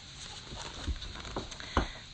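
A hardcover picture book being handled and turned close to a phone's microphone: light rustling and three dull knocks, the first about a second in and the others about half a second apart.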